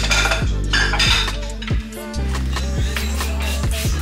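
Background music with a deep bass line that slides down in pitch, with dishes and utensils clinking over it in the first second or so.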